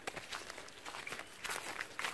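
Footsteps on dry grass and fallen leaves: faint, irregular crunching, with a few slightly louder steps near the end.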